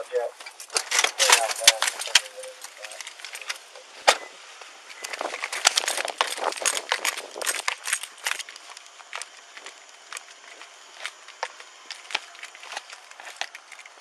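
Handling noise from an Axon Body 2 body camera worn on an officer: irregular clicks, knocks and rustling as the camera is jostled against the uniform while the officer gets out of the patrol car and moves on foot. Faint muffled voices can be heard in the first few seconds.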